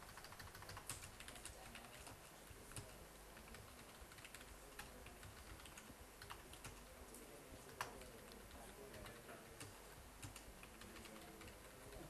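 Faint typing on a computer keyboard: an irregular run of small key clicks, with one sharper click about eight seconds in.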